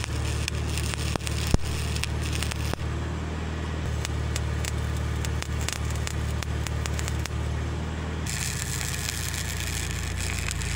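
Arc welding on thick steel plate: the arc's steady crackle and sizzle over a low hum, with one sharp pop about a second and a half in. About eight seconds in the sound turns brighter and hissier as a fresh bead is struck.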